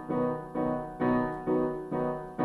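Piano accompaniment to a song between sung lines: repeated chords struck about twice a second, each dying away before the next.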